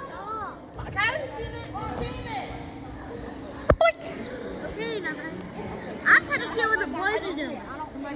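Children's voices chattering and calling out in a gym hall, with one sharp knock a little under four seconds in.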